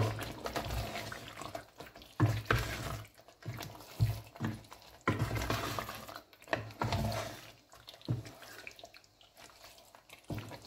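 A wooden spoon stirring thick tomato stew with pieces of meat in a metal pot: irregular wet sloshing strokes, some with a scrape against the pot.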